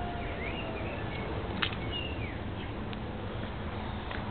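Garden ambience: a steady low background with a few short bird chirps and whistled glides, and one light click about a second and a half in.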